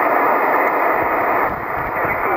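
Amateur radio transceiver on the 6-metre (50 MHz) band, its speaker hissing with band noise while on receive. The hiss is squeezed into the narrow voice passband, with a faint steady whistle running through it, and it dips slightly about a second and a half in.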